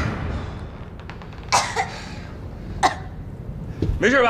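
A person coughing: one short cough with a small follow-up about a second and a half in, then another cough near three seconds, winded after being knocked down onto the ring mat.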